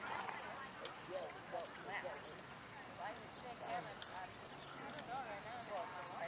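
Indistinct background voices of people talking, with a few sharp knocks of a horse's hooves on a wooden trail-obstacle box as the horse turns on it.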